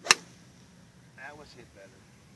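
Golf club striking a ball off the fairway turf: one sharp crack about a tenth of a second in. A short vocal sound follows about a second later.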